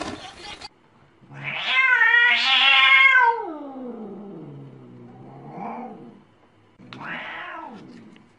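A cat yowling: one long, loud meow that starts high and slides down to a low pitch over about four seconds, then a short call and another meow near the end.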